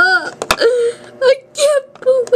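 A girl's voice doing pretend crying: a long wail falling in pitch at the start, then short whimpering sobs, with one sharp click about half a second in.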